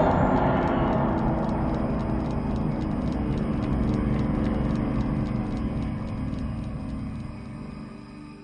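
Ominous horror film score: a dense, low rumbling drone with held tones above it, fading out over the last second or so.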